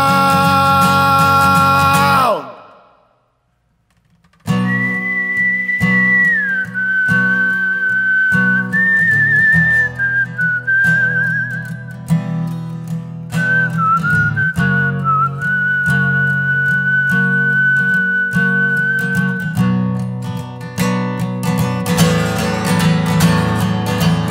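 A held sung note and the guitar stop together about two seconds in; after about two seconds of silence a man whistles a melody, one clear tone stepping and sliding between pitches with a brief warble, over a strummed acoustic guitar. The whistling stops about four seconds before the end and the guitar strumming carries on alone.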